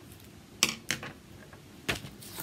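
Small hard craft items being handled: three sharp clicks, two close together about half a second in and a third near the end.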